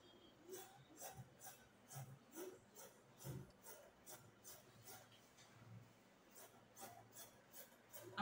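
Scissors cutting through fabric in a straight line: a run of faint, even snips, about two to three a second.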